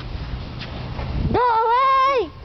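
A person's high-pitched, drawn-out whine, starting about one and a half seconds in and held fairly steady for under a second, over a low rumble.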